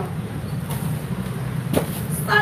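Steady low motor rumble, with one sharp knock near the end.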